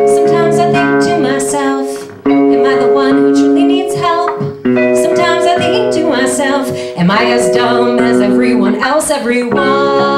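A live two-piece band song: held chords on a Yamaha electronic keyboard over electric bass guitar, with a woman singing. The chords change about every two and a half seconds, with a brief dip in loudness before each change.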